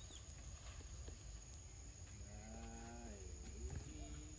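A single low, drawn-out animal call lasting about a second, held on one pitch and dropping at the end, over a faint steady high-pitched whine and low rumble.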